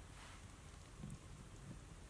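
Near silence: room tone, with a faint soft bump about a second in and another near the end.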